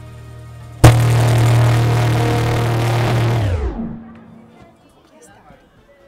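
Loud music over the public-address system cuts in abruptly about a second in, holds steady for about three seconds, then winds down with a falling pitch and dies away, as when playback is stopped. Only faint scattered sounds follow.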